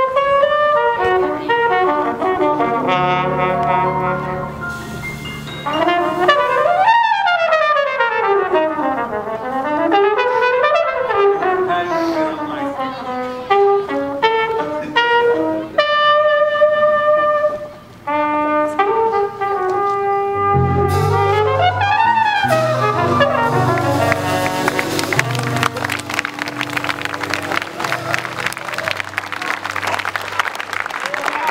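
Jazz trumpet playing a mostly unaccompanied solo passage: fast runs sweeping up and down, short phrases and held notes. About two-thirds of the way through, bass and the rest of the band come in under it, and near the end a noisy wash that sounds like applause and cymbals takes over.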